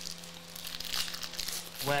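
Foil wrapper of a Panini Origins football trading-card pack crinkling and tearing as it is ripped open by hand: a dense run of sharp crackles lasting nearly two seconds.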